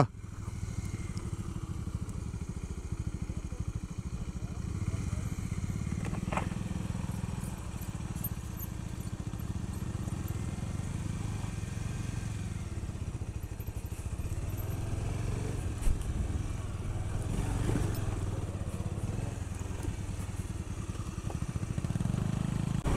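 Bajaj Pulsar 150's single-cylinder engine running at low speed on a rough dirt road, a steady low rumble. A brief high squeak about six seconds in and a single thump near 16 seconds.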